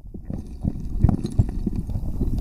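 Sound picked up underwater in a creek: a steady low churning rumble of moving water with irregular knocks and clicks of gravel and stones knocking together as the creek bottom is fanned, several a second.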